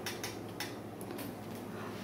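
Safety pin being handled and clasped while pinning clothing to a hanger: a few faint, light clicks.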